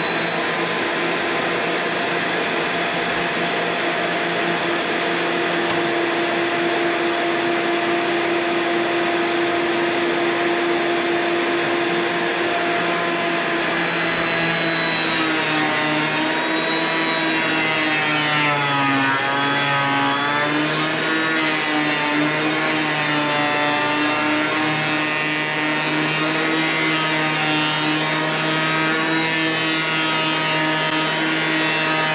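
DeWalt DW733 benchtop thickness planer running with a steady high motor whine. About halfway through, a rough-sawn board is fed in, and the pitch wavers and sags under the cutting load, dipping deepest a few seconds after the board goes in.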